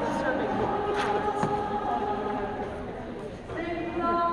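A congregation singing together, led by a woman's voice, in long held notes. The singing thins out briefly just before the end as the next line begins.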